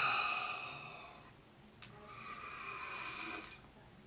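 A man breathing heavily close to the microphone: two long breaths, the first fading away, the second swelling and then stopping suddenly, each starting with a small click.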